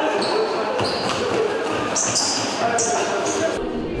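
A basketball game on a gym floor: a ball bouncing, sneakers giving short high squeaks on the boards, and children's voices in a large hall.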